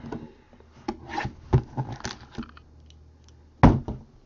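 Hands handling a shrink-wrapped trading card box and a box cutter on a table: a string of light scrapes and taps, then one louder knock near the end.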